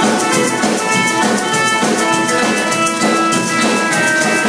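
Live rockabilly band playing an instrumental stretch: electric guitar over a fast, steady drum beat with quick cymbal and snare strokes, several a second.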